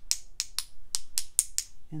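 A paint-loaded brush tapped against the handle of another brush to splatter paint: about seven quick, sharp clicks over two seconds.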